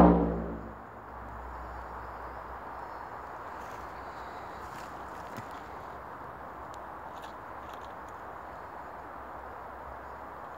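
A hand-held frame drum struck once, its deep boom fading out over about a second. After that there is only a steady outdoor background hiss with a few faint ticks.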